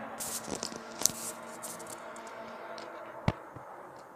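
Road traffic from a nearby major road: a steady engine drone. Two short hissy rustles come in the first second and a half, and a sharp click a little past three seconds.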